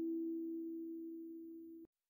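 The last held chord of a keyboard music track dying away, its notes fading steadily, then cut off abruptly near the end into silence.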